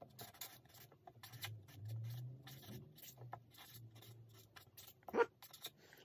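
Marker pen writing on a paper strip: faint, short scratchy strokes, with a low hum for a few seconds in the middle.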